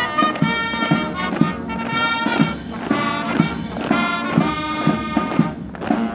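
Brass band playing a march, with held brass notes over a steady marching beat of about two beats a second. The music dips briefly just before the end and carries on.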